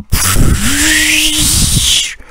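A loud edited-in sound effect: a rush of noise whose pitch sweeps upward, with a held low hum in the middle, cutting off after about two seconds.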